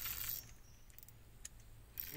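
Fishing reel being wound in to retrieve a feeder rig: a soft hiss that stops about half a second in, then near quiet with a couple of faint clicks about a second and a half in.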